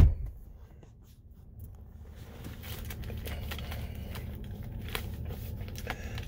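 A car door shuts with a single heavy thump right at the start, then a low steady hum fills the closed SUV cabin, with faint scattered clicks, growing a little louder about two and a half seconds in.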